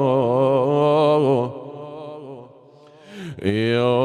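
A man's voice chanting an Arabic elegiac lament, holding a long wavering melismatic vowel. The voice breaks off about a second and a half in and returns with a sweeping glide up near the end.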